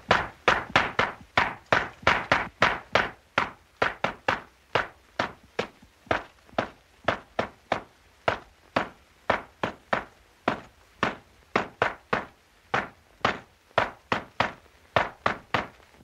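Miners' hand tools pounding on rock, a steady run of sharp blows about three a second, somewhat uneven.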